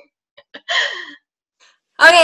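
A woman's short, breathy laugh, after two small clicks.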